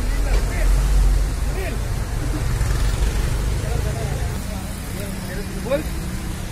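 Street ambience: a steady low rumble of passing road traffic, with faint voices talking in the background.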